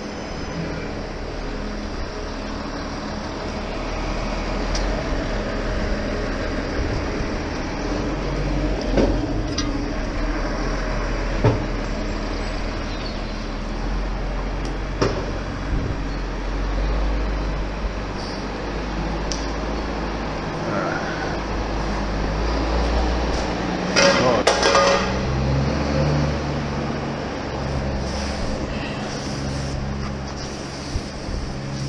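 An engine running steadily, with occasional knocks and scrapes of hand tools working wet concrete and a louder burst of scraping noise near the end.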